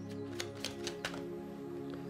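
A deck of tarot cards shuffled by hand, a string of light, irregular clicks, over quiet background music with held tones.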